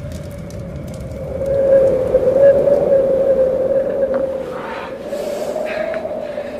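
Blizzard wind howling: a steady moaning whistle over a rush of noise. It swells a second or two in, with gusts of hiss near the end.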